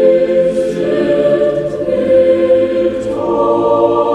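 Choir singing a slow hymn in long held chords. The harmony moves to new notes about a second in and again near the end.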